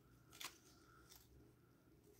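Near silence, with two faint, brief rustles of hands handling a small plush toy, about half a second and just over a second in.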